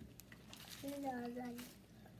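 A short voiced sound from a person, under a second long and about a second in, with faint clicks of fried chicken being picked at and eaten by hand.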